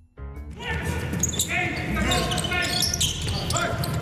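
Basketball game sound: a ball bouncing on a hardwood court, with voices. It starts suddenly a fraction of a second in.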